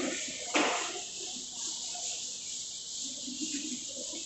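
Chalkboard duster wiping chalk off a blackboard: a steady scrubbing hiss, with one sharper, louder stroke about half a second in.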